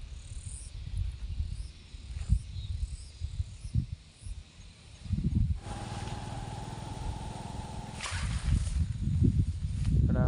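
Outdoor field ambience recorded on a handheld phone: irregular low rumbling and thuds from wind and handling on the microphone. A little past halfway the sound changes abruptly to a steady mid-pitched hum, followed near the end by a high hiss.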